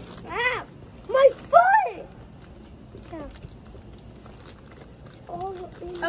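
Young girls' high-pitched wordless cries, three short ones in the first two seconds, then quieter voices near the end.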